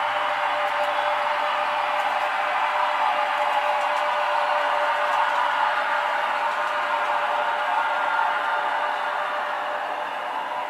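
HO-scale model locomotive running along the layout track: a steady whirring rumble with a constant thin whine, easing slightly near the end.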